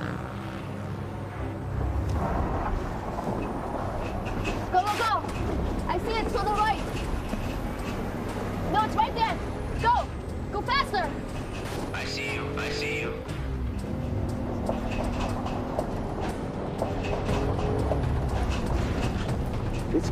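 A film soundtrack mix: a tense music score over a vehicle engine's low rumble, with shouting voices in the middle.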